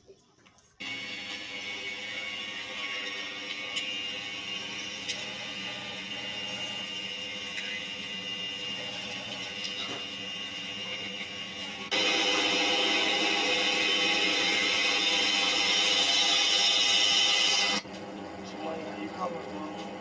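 Music and voices from video clips played back on a screen and re-recorded, with a steady dense background. About twelve seconds in, a louder, brighter section starts suddenly and cuts off about six seconds later.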